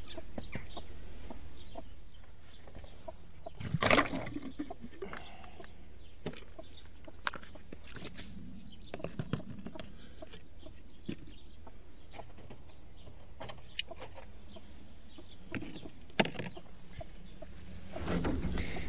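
Broody chicken hen clucking now and then, over scattered clicks and knocks as a plastic chick feeder and drinker are lifted out of the wire-floored run. The loudest knock comes about four seconds in.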